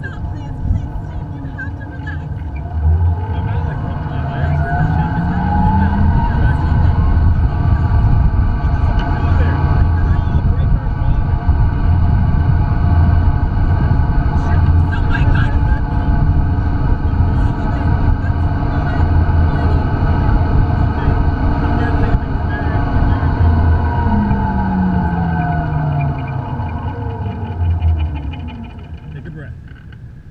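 Zipline ride's seat trolley running along its cable: a whine that rises in pitch as it speeds up a few seconds in and falls as it slows to a stop near the end. Heavy wind rumble on the microphone runs throughout.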